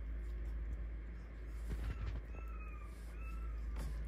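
A seven-week-old mini goldendoodle puppy giving two short, high, slightly falling whines about halfway through, with a few light clicks around them.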